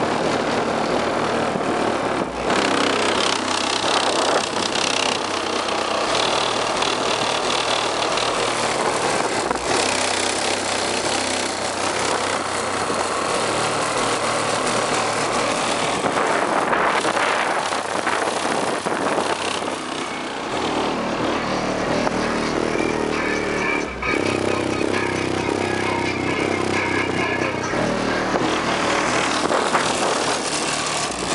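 Car audio system with a Digital Designs 9917 subwoofer on two Rockford Fosgate 1501bd amplifiers playing bass-heavy hip-hop at high volume. It is heard close to the car's body and sounds dense and overloaded.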